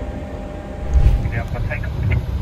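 Low, steady engine rumble heard from inside a vehicle, growing louder about a second in.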